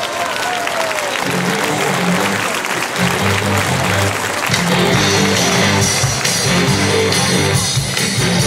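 Audience applauding as a live rock band starts up, electric guitar first and then bass notes entering about a second in; the full band is playing by about three seconds in.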